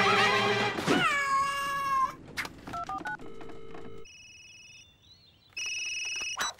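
A cartoon cry that slides down in pitch and holds for about a second as a loud crash dies away. Then comes a telephone call: a few short dialing tones, a steady tone, and electronic ringing tones near the end.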